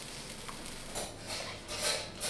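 A pan of veal strips in cream sauce being tossed on the stove: the sauce sloshes and hisses in the hot pan, with a few short swishing, scraping sounds in the second half.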